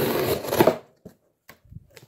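Gerber Asada's freshly sharpened cleaver blade slicing down through corrugated cardboard, a loud steady rasping rip that stops a little under a second in. A few light knocks follow as the cut-off piece of cardboard falls to the floor.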